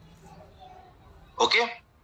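Faint room noise with a weak low hum, then a short spoken "okay" near the end.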